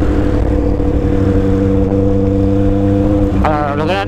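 Kawasaki Z800's inline-four engine running at a steady cruise, its pitch holding even, with road and wind noise as the bike rides along.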